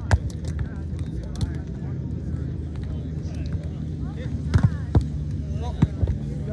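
A volleyball being struck by hand: one sharp, loud hit of the serve right at the start, then a quick run of further hits on the ball about four and a half to six seconds in, over distant voices.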